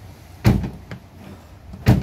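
Driver's door of a Renault Samsung SM3 being opened and shut: two solid clunks about a second and a half apart. There is no clacking from the door check, whose torn mounting panel has been reinforced with a welded-on steel plate.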